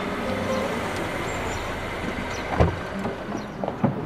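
A Volvo SUV rolling in and stopping with a low steady rumble of engine and tyres. A single thump comes about two and a half seconds in, and a few clicks near the end as the car door is unlatched and opened.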